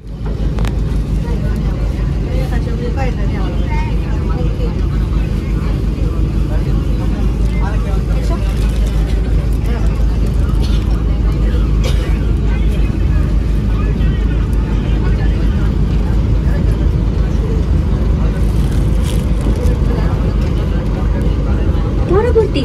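Metro train running, a loud steady low rumble heard from inside a crowded carriage, with passengers' voices over it.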